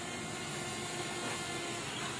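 Steady, even rushing noise of an outdoor location recording, with no distinct events.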